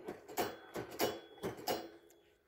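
About six sharp knocks and clicks, roughly three a second, as the red plastic ride-on car and its metal brake rod and linkage are handled and shifted over.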